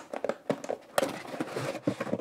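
Cardboard product box being opened by hand and its moulded tray and paper inserts handled: irregular scrapes, taps and rustles, with a sharper knock about a second in.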